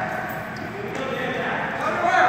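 Voices calling out in an echoing gymnasium, quieter at first and rising into a loud, held shout at the end.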